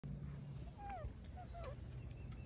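Labrador puppies whimpering: two short, high whines that fall in pitch, about a second in and again just over half a second later.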